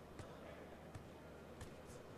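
Near silence: a low steady background hum with four faint, sharp taps spread through the two seconds.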